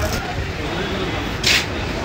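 Busy market background of indistinct voices and traffic noise, with a short, loud hissing rustle about one and a half seconds in.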